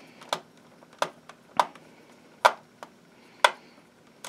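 About six small, sharp clicks at uneven intervals as a micro screwdriver turns out the screws of a laptop's plastic bottom cover.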